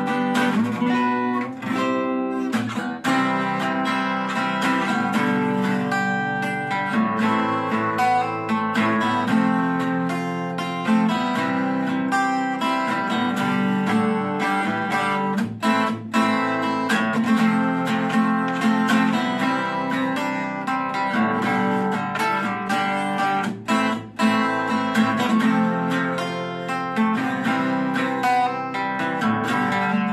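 Ibanez PC18MH laminated-mahogany acoustic guitar being played, chords strummed and picked steadily, with two short breaks in the playing about halfway and about two-thirds of the way through.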